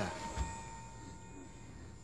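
Faint film-scene background: a low hum with a thin steady high tone, and a soft thump about half a second in.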